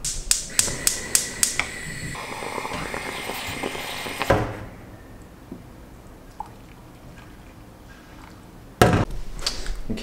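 A stovetop moka pot brewing on a gas burner: quick clicks, then a hissing sputter for a couple of seconds. After that, a faint stretch while the coffee is poured into a cup, and a sharp thunk near the end.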